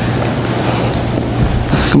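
Steady rushing noise with a low, even hum underneath, the background of the room as the microphone picks it up. A man's voice starts a word right at the end.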